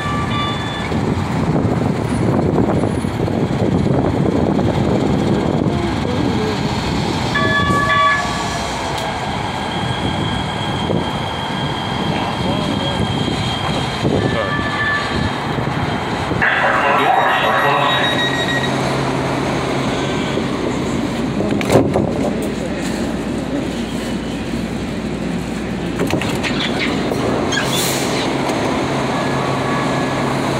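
LA Metro C Line light-rail train rumbling in along the station platform, with several short toots. It comes to a stand about 16 s in with a burst of brake noise, then sits with a steady low hum, broken by a single knock partway through.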